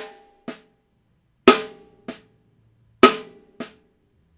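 Snare drum played slowly: a loud accented stroke followed about half a second later by a soft ghost note, repeated about every one and a half seconds, three pairs in all.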